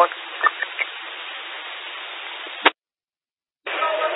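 Police two-way radio channel left open after a transmission, a steady hiss over the narrow radio band. It ends with a short squelch burst about two-thirds of the way in, then cuts to dead silence until the next transmission keys up with hiss near the end.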